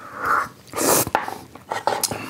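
Short hissy breaths and slurping mouth sounds of a taster drawing air over a sip of tea, the strongest about a second in, with a couple of faint clicks.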